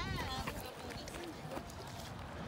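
Faint, distant voices talking briefly near the start, over a low outdoor rumble with a few small clicks.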